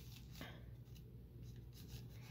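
Faint rubbing and rustling of hands smoothing a folded coffee filter flat on a cutting mat, with a soft brushing sound about half a second in and again near the end.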